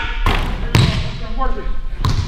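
A basketball bouncing in a gym: two sharp knocks about half a second apart, followed by a man's voice calling out briefly.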